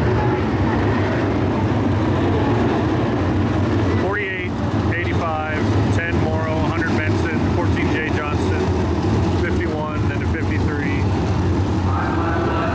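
Field of winged dirt-track sprint cars racing around the oval, their V8 engines running at full throttle in a dense, steady drone. Engine notes rise and fall as cars pass between about 4 and 11 seconds in.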